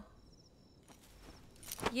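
Faint night ambience with a few soft, high cricket chirps, then a short sharp click near the end as a voice begins.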